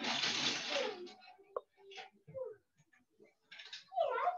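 A burst of rustling or handling noise lasting about a second, then faint scattered voices and a single sharp click, heard over a video call.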